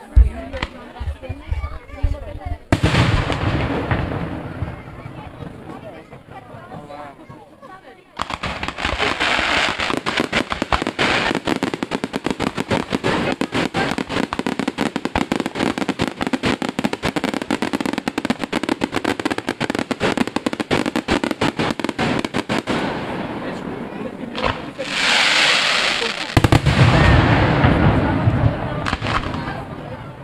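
Fireworks display: a bang right at the start, a loud burst just under three seconds in that fades away, then from about eight seconds a long run of dense, rapid crackling and popping, ending in heavy low booms near the end.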